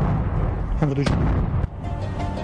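Explosion on a dirt track: the heavy rumble of the blast just after detonation, then two sharp cracks about a second in and again shortly after, heard over a music bed.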